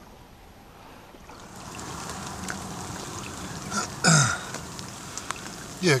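A steady hiss of water that swells about a second and a half in, alongside a boat where a carp has just been netted. A man makes one short grunt about four seconds in.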